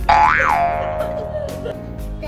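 A cartoon-style boing sound effect: a sudden pitched sound that swoops up and back down, then rings on and fades over about a second and a half. Background music plays underneath.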